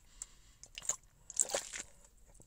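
A few faint, short clicks and crunching noises, about three, spaced roughly half a second apart.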